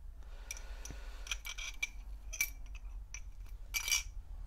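Faint, scattered small ticks and clicks as a cup of pickling solution holding brass and bronze pieces is handled, then near the end a short, louder clinking scrape as metal tongs reach in among the pieces. A steady low hum runs underneath.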